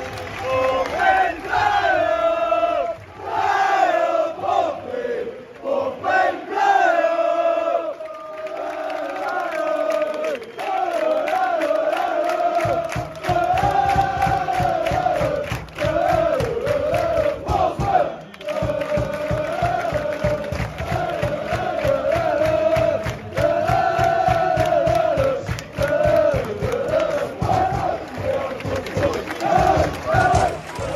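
Football crowd singing a chant together in a stand, with steady rhythmic clapping joining in about 13 seconds in.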